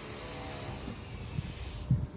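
A motor vehicle's engine running, a steady hum that fades out within the first second. Under it is low rumble and a couple of soft knocks from the hand-held microphone.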